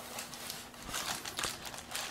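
Plastic packaging crinkling and cardboard rustling as hands dig small plastic-bagged accessories out of a cardboard box, with a few soft irregular clicks.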